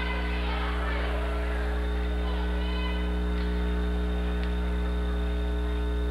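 Steady electrical mains hum: a low buzz with a ladder of evenly spaced overtones, holding one level throughout.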